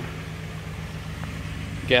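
A car engine idling, a steady low hum, most likely the 2019 Toyota Camry XLE's own engine running.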